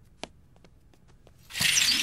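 Cartoon sound effect of a fabric curtain swished open: a short, loud swish about a second and a half in, after a quiet stretch with a faint click.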